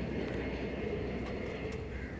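Tata Hitachi crawler excavator's diesel engine running at a steady idle.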